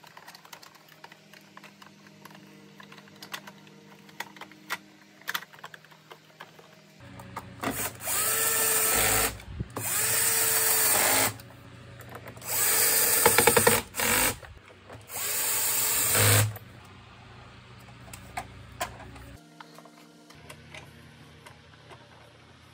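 Cordless electric screwdriver running in four short bursts of about a second and a half each, near the middle, its motor whine rising as it spins up and dropping as it stops, driving screws into the plastic vacuum cleaner housing. Light clicks of plastic parts being handled come before and after.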